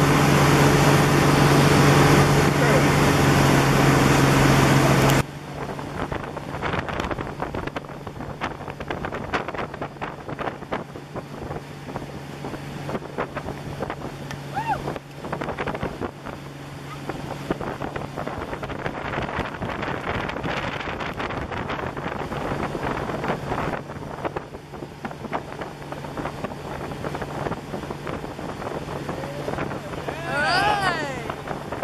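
Motorboat engine running steadily at towing speed with a low hum, over wind and water-spray noise. The engine sound drops sharply about five seconds in, leaving a fainter hum under gusty wind on the microphone.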